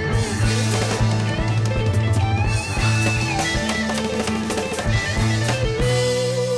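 Instrumental Argentine progressive rock: a band playing with drum kit, sustained bass and a gliding melodic lead line. Just before the end the drums drop out and a single held note carries on.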